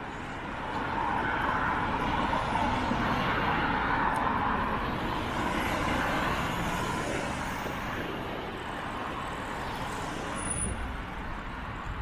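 Road traffic beside a bicycle: a car passes, its tyre and engine noise swelling about a second in and fading after about six seconds, over steady low traffic rumble picked up by a bike-mounted camera.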